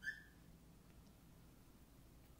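Near silence: room tone with a faint low hum, and one brief faint high squeak right at the start.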